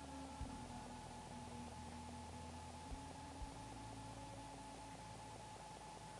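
Near silence: faint room tone with a low steady hum and two or three soft clicks.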